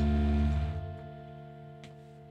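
Electric guitars and bass holding the final chord of a rock song: the low notes stop about half a second in and the remaining guitar chord rings and fades out. A faint click near the end.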